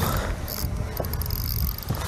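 Outdoor wind rumbling on the microphone over open water, a steady low noise with a few faint clicks.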